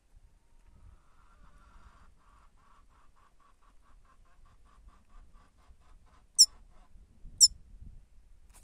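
Two short, very loud, high-pitched goldfinch calls, about a second apart, near the end. Before them there is a faint, even run of low notes, several a second, that slows and fades out.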